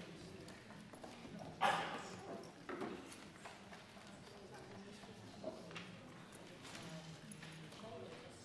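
Low murmur of parliament members talking quietly in the chamber while votes are being cast, broken by a few sharp knocks, the loudest about one and a half seconds in.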